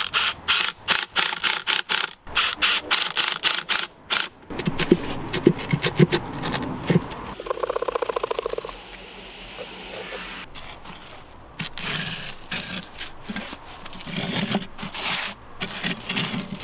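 A swollen wooden block being worked loose and dragged out of the oven's firebrick opening: repeated knocks and scrapes of wood against brick. About eight seconds in there is a rapid chattering lasting about a second and a half.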